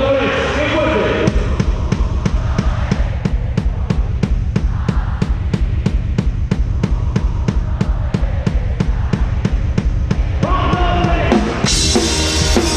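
A live band's drum beat through a festival PA: a steady kick-drum pulse about four beats a second over a deep low rumble. A voice comes in over it near the end.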